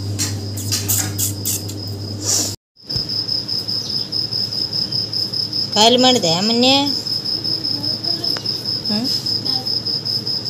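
A steady, high-pitched insect trill, like a cricket chirring, runs on both sides of a brief dropout nearly three seconds in. A short voice is heard about six seconds in.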